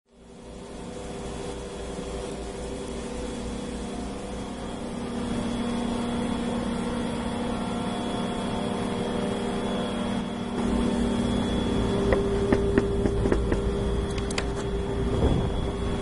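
Containerised snowmaking machine running, its compressors and blower giving a steady hum with several held tones over a low rumble that rises in level over the first few seconds. A few short clicks and knocks come in the last few seconds.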